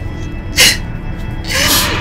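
A woman crying, with two sharp sniffing breaths, about half a second in and near the end, over soft background music.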